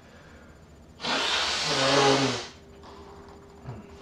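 A person blowing their nose into a tissue: one forceful blow of about a second and a half, starting about a second in and getting louder before stopping abruptly.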